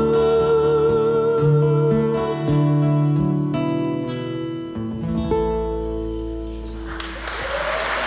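The final bars of a song: a held sung note with vibrato over acoustic guitar and band, then a last chord left to ring out. About seven seconds in, audience applause breaks out.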